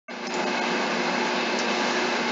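A steady, even rushing noise with a faint low hum under it, holding at one level.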